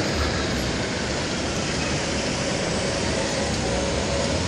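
Steady city road traffic noise with a low engine rumble from passing buses and cars.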